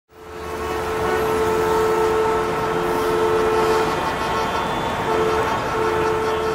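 Steady rumbling noise with a sustained horn-like drone; the drone mostly drops away about four seconds in.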